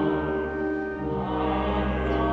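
A small church choir singing long held chords, moving to a new chord about halfway through.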